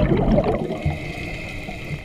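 Underwater burbling of scuba exhaust bubbles around the diver and camera, loudest in the first half second, then easing into a quieter steady hiss.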